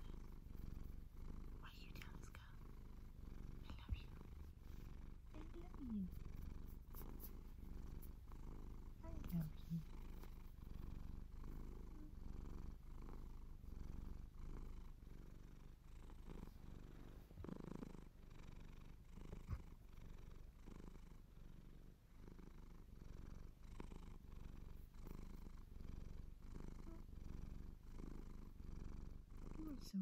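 Domestic cat purring steadily close to the microphone, the purr swelling and fading with each breath, under soft scratchy rustles of fingers working through its fur. Two short squeaky gliding notes come about six and nine seconds in.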